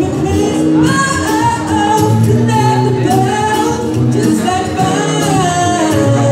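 A man singing an R&B song live into a microphone, with long held, wavering notes, accompanied by acoustic guitar.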